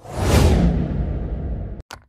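A whoosh transition sound effect with a deep low rumble. It starts suddenly and is loudest in its first half-second, then its top end falls away over nearly two seconds before it cuts off. A short sharp click follows just before the end.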